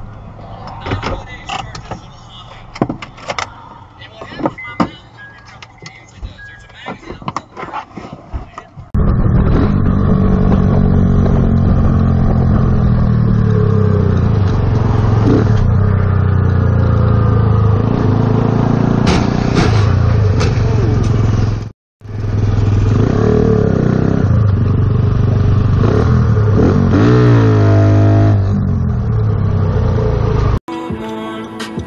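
Quiet dashcam audio with scattered clicks, then a motorcycle engine running loud and steady at highway speed amid wind and road noise, its revs rising as it accelerates near the end.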